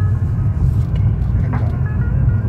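BMW E36's M52B30 inline-six and road noise droning steadily inside the car's cabin as it cruises at a light, steady pace.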